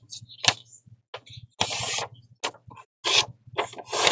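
Paper being handled: a sharp tap, then several short rustles and slides of paper sheets against each other and the desk, over a faint low hum.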